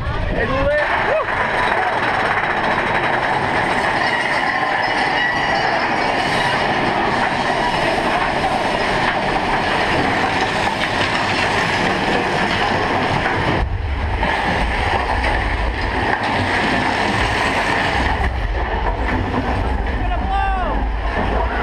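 Mine-train roller coaster cars running along their track with a steady rattling clatter. A deeper rumble joins about two-thirds of the way through.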